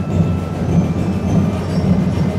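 Festival percussion band of massed drums playing a steady, rumbling beat.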